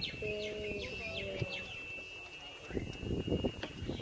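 Birds chirping in short, repeated falling calls over a steady, thin high tone. A low, held hum-like voice sounds in the first half, and there are a few knocks near the end.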